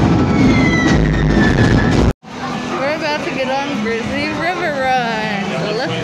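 Music with heavy rumbling noise from a fireworks show, cut off abruptly about two seconds in. It is followed by people's voices, with no clear words.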